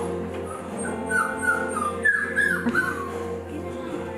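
Aussiedoodle puppy whining, a quick run of short high-pitched whimpers, over steady background music.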